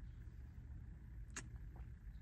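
Faint low rumble of a car idling, heard from inside the cabin, with one soft click a little past halfway.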